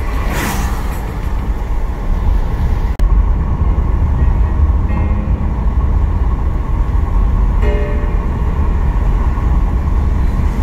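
Road noise inside a moving car: a steady low rumble of tyres on a wet road, with an oncoming car swishing past, falling in pitch, about half a second in.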